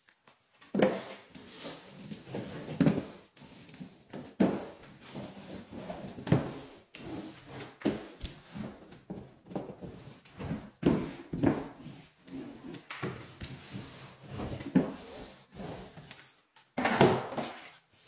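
Drywall inside-corner roller worked up and down the corners, pressing freshly applied tape into wet joint compound: a string of uneven rolling and rubbing strokes, one or two a second.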